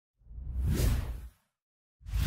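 Whoosh sound effect of an animated logo intro: one swoosh that swells and fades over about a second, with a heavy low end. A second whoosh begins at the very end.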